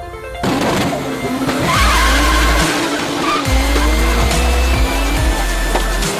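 Drift car engine revving, its pitch sliding up and down, with tyres squealing loudly about two seconds in, over electronic music with a deep bass line.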